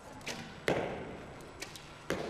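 A recurve bow being shot: a sharp thwack of the released string, ringing in the echoey hall, with a lighter knock shortly before it.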